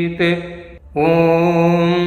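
A single voice chanting a Vedic mantra on one steady pitch, holding long drawn-out syllables. There is a brief break a little under a second in, then a second long held syllable.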